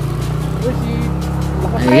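Motorcycle engine running at a steady low speed, an even low hum, with background music over it.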